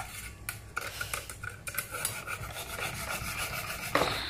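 A kitchen knife's steel blade drawn again and again through the slots of a manual pull-through knife sharpener: quick, repeated rasping scrapes. A sharper knock comes near the end.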